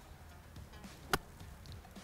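A single crisp click a little over a second in: a wedge striking a golf ball on a short, low-spinning chip shot.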